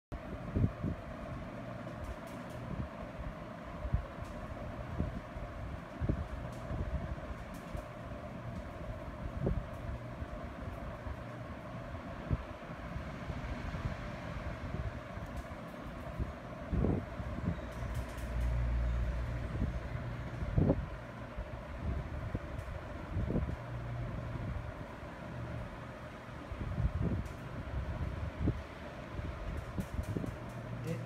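A steady low mechanical hum, like a fan or air conditioner running, with scattered soft thumps and knocks throughout and a heavier low rumble a little past the middle.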